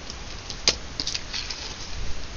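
Paper and cardstock pieces being handled and laid down on a table: light rustling with a few short clicks, the sharpest about two-thirds of a second in.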